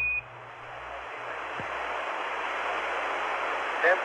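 A short beep at the start, the Quindar tone marking the end of the Capcom's transmission on the Apollo air-to-ground loop. It is followed by radio static, a steady hiss that swells over the first couple of seconds and holds, as the spacecraft's channel opens.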